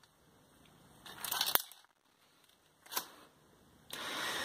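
Handling noise from a leather glove fitted with metal finger blades being moved about: a short scraping rustle ending in a sharp click about a second and a half in, and another brief rustle near three seconds.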